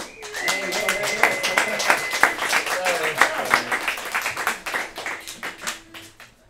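A small audience clapping and cheering, individual claps distinct, the applause thinning out and fading over the last couple of seconds. A steady high tone is held through roughly the first two seconds.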